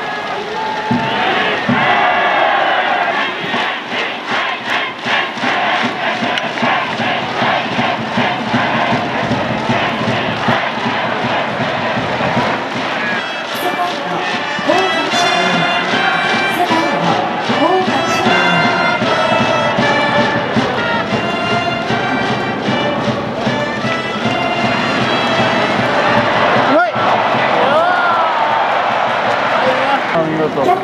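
A stadium cheering section: a school brass band with drums and a crowd chanting along. A steady drumbeat and voices come first, and trumpets take up a tune about halfway through.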